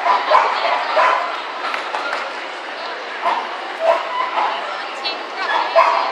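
Dog-show hall din: crowd chatter with a dog barking several times among it.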